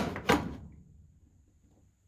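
A couple of light knocks as an aluminium attach angle is pressed into place against the riveted aluminium fuselage structure: one right at the start and another about a third of a second later, then quiet.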